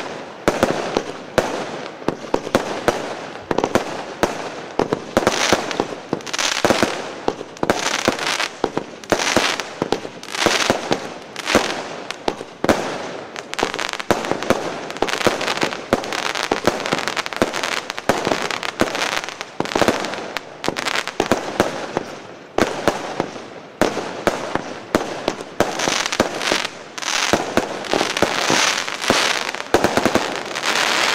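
Lesli Vuurwerk 'Leo' fireworks cake firing shot after shot: sharp launch and burst reports at roughly two a second, each trailed by a short sizzle, with a couple of brief lulls.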